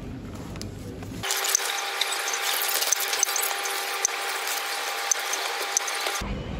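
Plastic crinkling and rustling, a dense crackle of small clicks, as groceries are handled and bagged at a supermarket self-checkout. It starts abruptly about a second in, after a short stretch of quieter store background.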